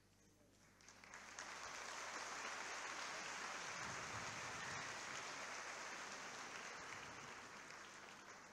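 Audience in a concert hall applauding, the clapping starting about a second in, holding steady and easing off slightly near the end.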